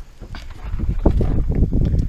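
Low, uneven wind buffeting on the microphone with scattered knocks and handling noise as the car's hood is lifted open.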